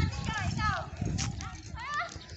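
Distant high-pitched shouts and calls, a few falling in pitch in the first second and one rising near the end, over the low thumps and rustle of someone walking through grass with a phone.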